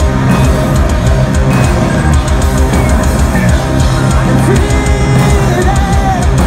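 A metalcore band plays live and loud, an instrumental passage of distorted electric guitars, bass and a drum kit pounding along.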